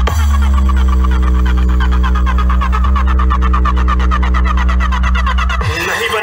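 Electronic dubstep-style DJ remix played at high volume through a large DJ sound-system stack of bass cabinets and horn speakers. A heavy sustained bass drone runs under a fast pulsing beat, and the bass cuts out shortly before the end.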